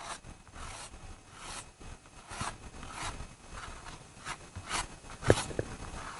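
Pastel stick rubbing and scratching across paper in a series of short strokes, a little more than one a second, the loudest near the end.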